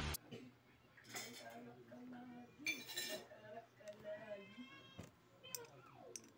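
Faint clinks and a short scrape of small metal parts being handled: the steel pipe body of a homemade PCP air tank and a thin metal pin.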